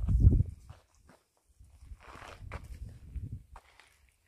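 Wind gusting on the microphone as a low, uneven rumble, strongest in the first half-second and lighter after, with a few footsteps on dry ground.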